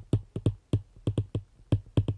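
Stylus tip tapping and clicking on a tablet's glass screen while handwriting a word: a quick irregular series of about a dozen sharp taps.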